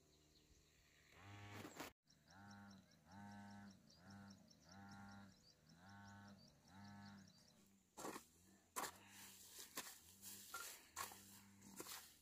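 Faint outdoor sound: an animal gives a series of about six short, level-pitched low calls, with a fast high ticking trill over them. From about eight seconds in comes a run of sharp knocks, a hoe chopping into the dry ground.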